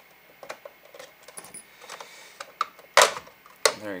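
Plastic housing of a Philips Wake-up Light being pried apart with a thin tool: light clicks and scrapes, then a loud sharp snap about three seconds in and a second one just after as the case comes free.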